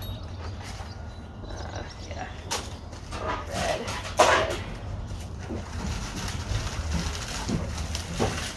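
Gloved hands handling and rustling pieces of a large aloe plant, giving scattered short noises over a steady low rumble. One brief louder sound comes about four seconds in.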